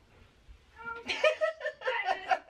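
A woman laughing in quick high-pitched bursts, starting about a second in after a nearly quiet first second.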